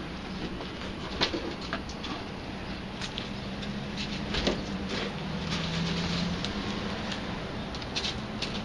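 A wooden cable spool rolled along a concrete sidewalk, unwinding a bundle of beverage-line hoses that drag along the ground. Scattered light clicks and taps sound over a low steady hum.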